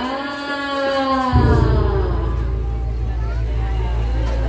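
A single voice holding one long, wavering note that ends about a second and a half in, followed by a steady low rumble under crowd chatter.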